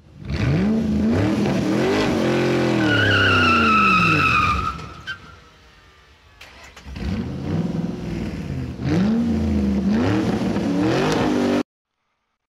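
Car engine revving up and down, with tires squealing in a falling tone partway through. After a short lull it revs again, then cuts off suddenly.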